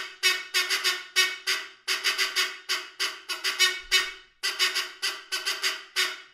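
A brass squeeze-bulb car horn honked as a musical part: about twenty short, bright honks on one pitch in a quick urgent rhythm, falling into three phrases with brief breaks a little under two seconds in and a little over four seconds in.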